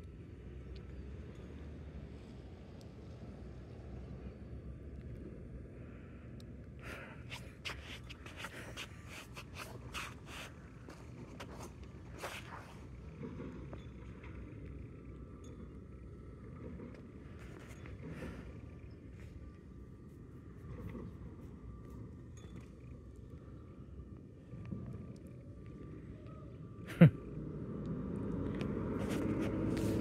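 Quiet street ambience: a low steady rumble of distant traffic, with scattered short clicks in the middle. Near the end a brief loud sound falls in pitch, and then an approaching garbage truck grows steadily louder.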